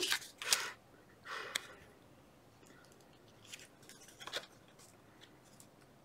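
Paper-covered playing cards and craft tools handled on a cutting mat: a few short rustles and clicks, busiest in the first two seconds, then sparse faint ticks.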